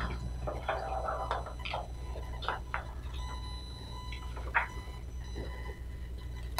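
Meeting-room tone: a steady low hum under scattered small clicks and taps of people writing and handling things at a table, with a brief faint murmur in the first second.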